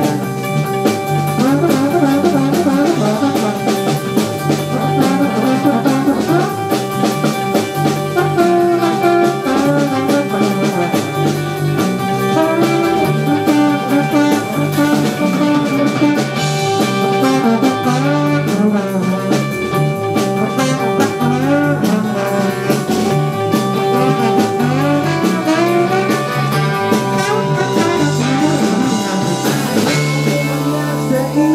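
Live band playing an instrumental passage: a horn section including trombone, over electric guitar, bass guitar and drum kit.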